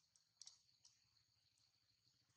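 Near silence, with a few faint sharp clicks in the first second over a faint, steady high-pitched hum.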